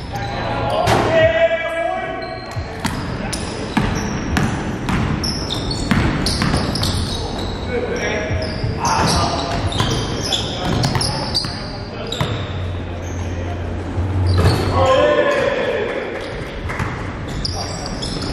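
Live basketball play on a hardwood gym floor: the ball bouncing, sharp sneaker squeaks and players calling out, all echoing in the gymnasium.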